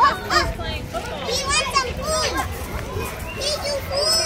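Young children's high-pitched excited voices and squeals, with no clear words, in short bursts throughout.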